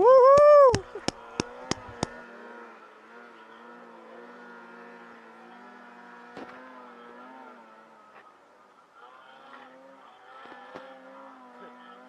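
A loud, brief tone that rises and falls in pitch, followed by four sharp clicks about a third of a second apart. Then a snowbike engine runs steadily at a distance, its pitch wavering with the throttle as it climbs a hill.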